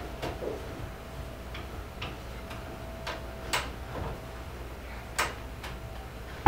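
Sparse wooden clicks and knocks from the frame of a reproduction folding field bed as its parts are handled and fitted together, a few light taps and two sharper knocks a second or two apart.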